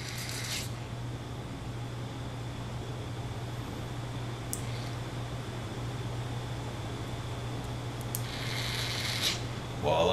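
A steady low hum, with one sharp click about four and a half seconds in as a mini double-pole double-throw toggle switch is flipped to test a Tortoise switch machine.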